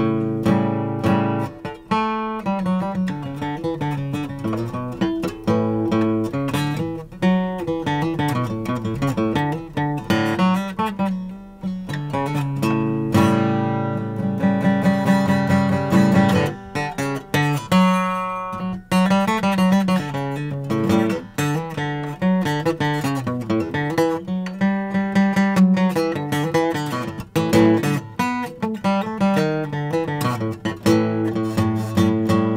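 Acoustic guitar played in a continuous run of picked notes and short strums, working through a major-scale pattern with the minor seventh added (the Mixolydian mode).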